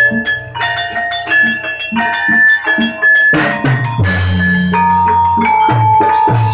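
Live Javanese gamelan accompaniment for a buto dance: ringing metallophone notes over rhythmic drum strokes. A loud crash comes about three and a half seconds in, followed by a low sustained note under the drumming.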